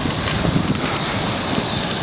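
A large bonfire of dry brush and wood burning hard: a steady rush of flames with a low rumble and scattered faint crackles, mixed with wind buffeting the microphone.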